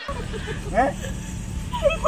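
Young women's short, high-pitched squeals and an "eh?" of embarrassed surprise, a few brief cries about a second in and again near the end, over a steady low rumble of background noise.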